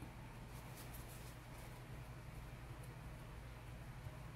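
Quiet room with a steady low hum and a few faint, soft dabbing touches of a felt applicator on paper.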